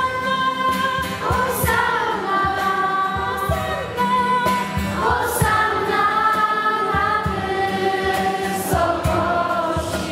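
A group of girls singing a church hymn together into handheld microphones during Mass, moving from one held note to the next.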